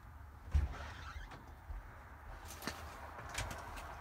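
A dull thump about half a second in, then a few sharp clicks near the end from a glass storm door's latch and handle as it is being opened.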